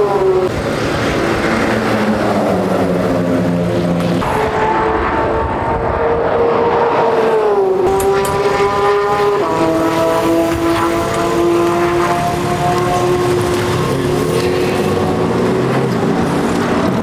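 Car engines at a race circuit. One engine runs at high revs, its pitch holding, then dropping in steps and slowly climbing again, over other engines running lower.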